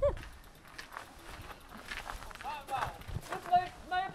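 Scattered clicks and taps of footsteps on hard ground, with a few brief voices in the second half.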